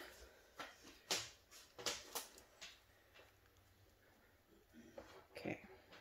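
A few faint, scattered clicks and taps of handling as a handheld hair dryer is picked up and held over the canvas; the dryer is not yet running.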